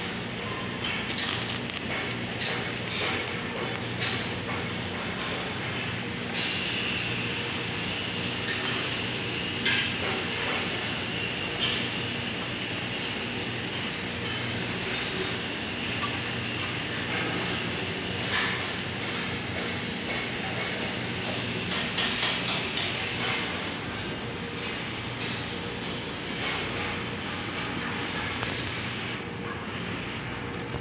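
Steady workshop machinery noise with a constant low hum, from the welding equipment and machines of a steel fabrication shop; the noise grows brighter and hissier about six seconds in.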